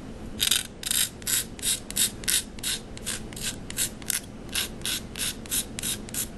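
Craft knife blade scraping a pastel stick in quick, even strokes, about three a second, starting about half a second in.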